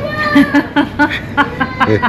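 A loud, steady high-pitched squeal from a café coffee machine, with a man and a woman laughing over it.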